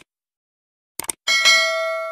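Subscribe-button animation sound effect: a quick pair of mouse clicks at the start and another pair about a second in, then a bell ding that rings on and slowly fades.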